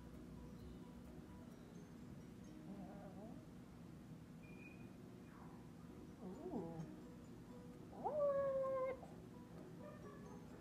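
Young beagle whining: faint whimpers early on, a short whine about six and a half seconds in, then a longer, higher whine held for about a second near the end, as a lanced sebaceous cyst on the bridge of its nose is squeezed.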